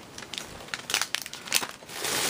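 Clear plastic packaging crinkling as it is handled, in a series of light crackles, the strongest about a second in.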